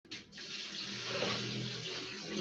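Water running from a tap in a steady rush, starting just after a brief dip at the beginning.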